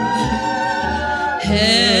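A woman's singing voice holds one long, steady note. About a second and a half in, it breaks off and a different recording cuts in: singing with a wide, fast vibrato over accompaniment.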